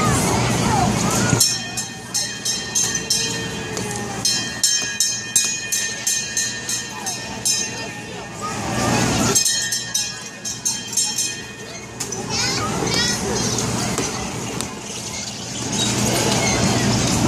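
A small bell on a kiddie carousel's fire-truck car rung over and over in fast runs of about three strikes a second, two long spells with a short break between, over children's voices.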